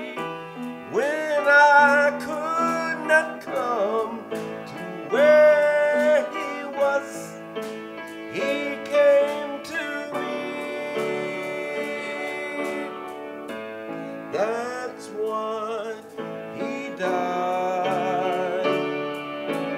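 A man singing a gospel song solo into a microphone over instrumental accompaniment, holding notes with a clear vibrato.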